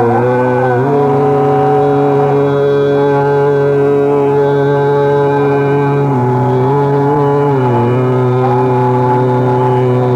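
Hindustani classical vocal music in Raag Megh: a male voice holds long notes over a steady drone, sliding slowly between pitches a few times.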